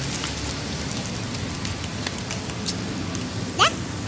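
Steady hiss of outdoor street noise, with a short rising cry near the end.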